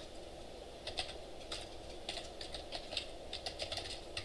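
Computer keyboard being typed in short irregular runs of keystrokes, busier in the second half, over a steady low room hum.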